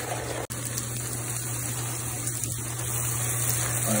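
Grated onion frying in vegetable oil in a pan: a steady sizzle over a low steady hum, broken by a brief dropout about half a second in.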